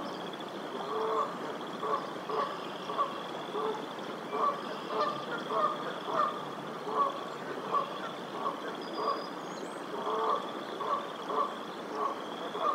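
Canada goose honking over and over in short honks, about two a second, over a steady high trill in the background.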